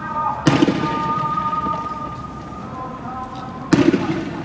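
Two sharp bangs, the first about half a second in and the second near the end, from tear gas rounds fired during a riot clash. A steady high tone is held between them.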